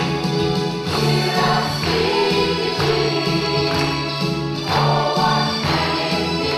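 A mixed choir of adults and children singing together in full voice, holding sustained chords.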